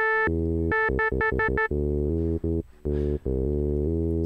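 Native Instruments Massive software synthesizer playing a low-pass filtered patch whose cutoff follows the key through a drawn key-tracking curve. A higher note, held and then repeated in short stabs, alternates with low bass notes, with a short gap near the end before the low notes resume.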